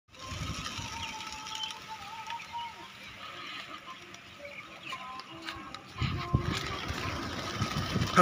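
Wings of a large flock of domestic pigeons flapping as the birds take off, with rapid low flutters that grow louder about six seconds in as birds pass close. A thin wavering tone sounds over it in the first few seconds.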